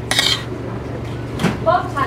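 A metal spoon and fork clinking and scraping against a metal thali plate as rice and dal are scooped up, with a sharp clink near the start and another about one and a half seconds in.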